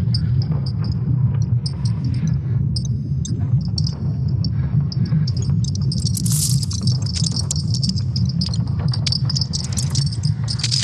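Sound bite of a recording of Earth's magnetic field: a steady low hum under scattered clicks and many short high chirps, with a brief burst of hiss about six seconds in.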